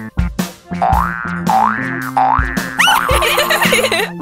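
Bouncy cartoon background music with a steady beat, over a springy boing-like sound effect that slides up in pitch three times, followed by a quick rising swoop near the end.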